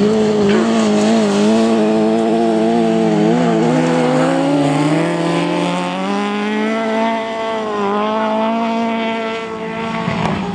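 Autograss race car engines running at high revs, several engines at once, their pitch wavering as the drivers lift and accelerate. The pitch sags about halfway through, then climbs again.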